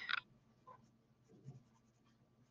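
Pastel sponge applicator rubbing PanPastel colour onto smooth paper: a short scratchy rub at the start, then faint soft strokes.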